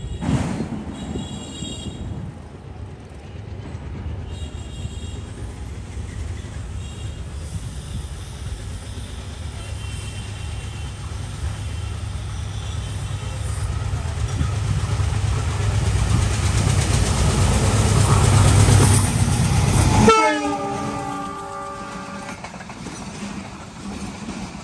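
Diesel-hauled express train approaching at speed: several short horn blasts, with the engine and wheel rumble growing steadily louder. About twenty seconds in the rumble cuts off abruptly and a horn note sounds, dropping in pitch and then holding, as the coaches pass.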